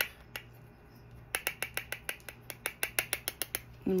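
Powder brush tapped against the rim of a plastic loose-powder jar to knock off excess setting powder: one click, then a quick run of light clicks, about eight a second, starting a little over a second in.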